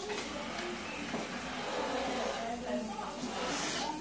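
Indistinct voices of several people talking in the background of a room, with a brief hiss near the end.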